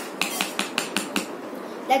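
Plastic toy knife chopping a toy chili on a plastic toy cutting board: about six quick, even taps, roughly five a second.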